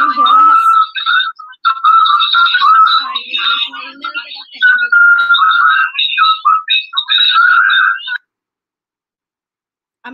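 Tinny, garbled speech and music fed back through a live video call, with held whistling tones of audio feedback: a streaming audio glitch. It cuts off suddenly about eight seconds in.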